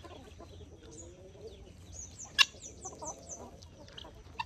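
Free-range desi chickens clucking quietly, with a quick run of short, high, falling chirps around the middle. A single sharp click, the loudest sound, comes about two and a half seconds in.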